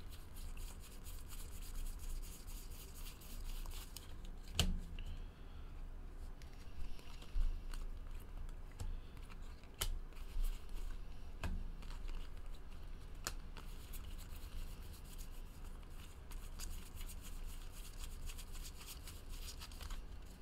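Baseball trading cards being flipped through by hand, one card sliding off the stack after another in a quick, continuous run of soft scrapes and clicks, with a few louder clicks now and then.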